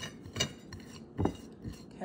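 Hands working crumbly flour dough on a ceramic plate, with three short, light clinks and knocks against the plate and its metal spoon.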